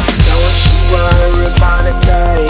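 Background music: a pop/R&B track with heavy bass and a steady drum beat at about two hits a second, with held melodic notes over it.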